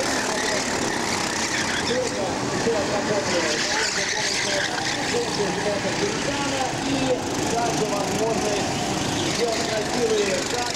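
Several kart engines running at once on the track, their revs rising and falling and overlapping as the karts lap the circuit.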